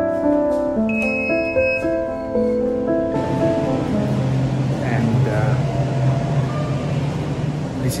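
Soft background music, a tune of held, piano-like notes that ends about three seconds in. After it comes a steady low hum of room ambience with faint voices.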